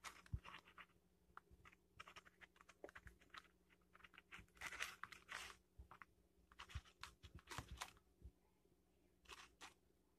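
Aluminium foil crinkling and crackling in irregular bursts as it is pulled open by hand, faint, with the busiest stretches around the middle.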